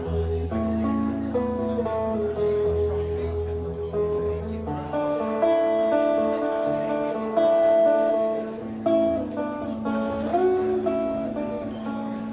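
Acoustic guitar played live through a PA, chords ringing and changing every second or so; the deep bass notes drop out about five seconds in.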